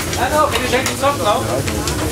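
Busy rally service-tent work: a mechanic's voice, sharp clicks and clatter of tools, over a steady low hum.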